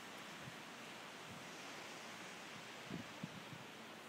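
Faint steady outdoor hiss, with a few soft footsteps in snow about three seconds in.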